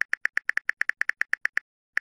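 Phone on-screen keyboard key clicks as a caption is typed: a quick, even run of about eight taps a second with silence between them, stopping shortly before the end, then one last tap.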